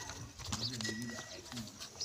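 Nili-Ravi water buffalo close to the microphone, stepping and shifting on dry dirt, with a short low call about half a second in.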